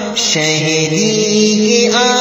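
A wordless vocal interlude in a naat: layered voices chanting or humming long held notes, the low voice shifting pitch a couple of times.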